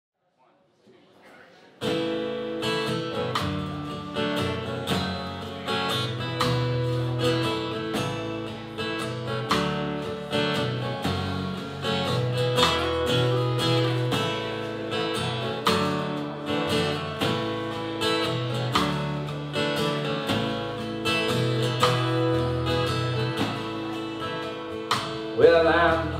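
Live country band playing an instrumental intro: strummed acoustic guitar, upright bass and drums, starting suddenly about two seconds in. A man's singing voice comes in at the very end.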